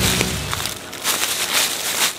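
Footsteps crunching through dry fallen leaves as a person walks a few paces and stops.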